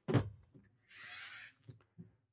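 A light thunk as a 3D-printed plastic robot unit is handled on a wooden desk, then a brief brushing, sliding sound about a second in.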